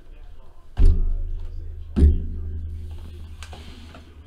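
Two heavy thuds as sealed trading-card hobby boxes are pulled from the stack and set down on the tabletop, each followed by a low, boomy rumble that dies away slowly.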